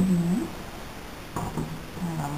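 A woman's voice trailing off in a long held syllable, then about a second and a half in a single sharp metallic knock as a small aluminium pot is set down on a gas stove's cast burner grate.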